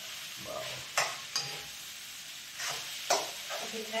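Metal spoon stirring poha in a steel kadai on a gas stove, with sharp scrapes and clinks against the pan about a second in and again about three seconds in, over a steady hiss of frying.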